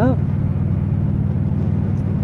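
Motorcycle engine running steadily at cruising speed, with wind rush on the helmet-mounted microphone.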